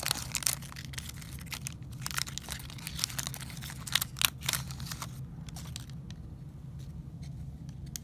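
Foil wrapper of a Panini Mosaic football card pack crinkling and tearing as it is opened and the cards are slid out, a busy run of crisp crackles that thins to a few faint rustles over the last few seconds.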